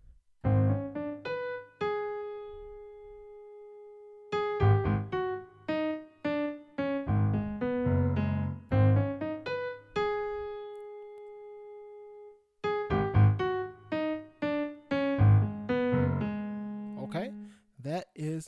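Digital piano played slowly with both hands together, a chord-and-bass left hand under a right-hand riff, at a practice tempo. It comes in three phrases, each ending on a held note that rings and fades.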